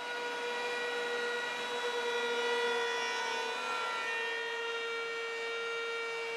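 Router with a flush-trim bit running at speed, a steady high-pitched whine that holds its pitch throughout, as the bit trims plywood against a template.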